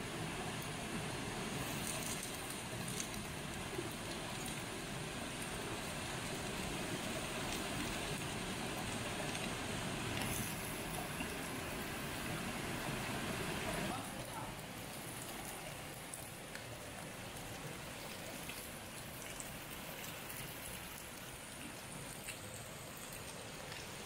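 Masala-coated fish steaks sizzling in hot oil on an iron tawa over a wood fire, with the steady rush of stream water behind. The sound drops a little in level about fourteen seconds in.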